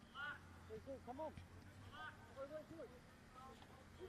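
Faint, distant voices calling out several times across the ground, over a low steady hum.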